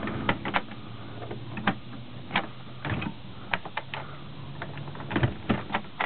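Wooden pull-out TV shelf in a motorhome cabinet being tugged and jiggled by hand: irregular clicks and knocks from the wood and its metal latch hardware. A steady low hum runs underneath.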